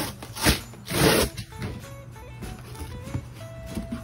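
A cardboard shipping box being torn open, with duct tape ripping off its flaps in two short, loud tearing bursts about half a second and a second in, then lighter rustling of the cardboard as the flaps are folded back.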